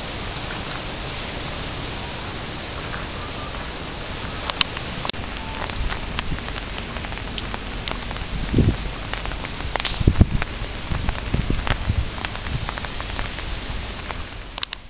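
Steady hiss of rain falling on wet pavement. About halfway through, scattered sharp clicks and low thumps join it.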